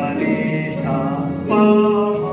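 Electronic keyboard playing a melody, with a voice singing along in held notes.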